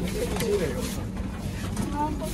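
Indistinct chatter of passengers jostling in a crowded train coach, a steady murmur of several voices with no words standing out.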